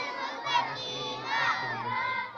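A large crowd of schoolchildren shouting and chattering over one another, many young voices at once.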